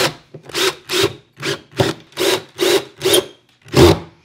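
Ryobi cordless drill driving a screw through a hairpin leg's metal mounting plate into the wood panel, run in short trigger pulses, about two a second, each a brief whine.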